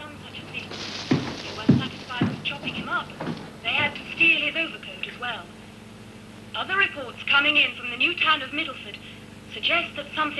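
A woman newsreader speaking through a Sony television set's speaker, her voice thin with little bass, starting about three and a half seconds in with a short pause in the middle. In the first couple of seconds there are a few knocks and a short hiss.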